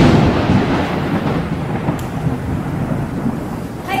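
Thunder, likely an added dramatic sound effect: a sudden loud crack at the start, then a long rolling rumble with a rain-like hiss that slowly dies away.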